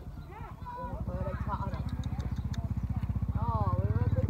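A small engine chugging in a fast, even beat, growing steadily louder from about a second in, with people talking over it.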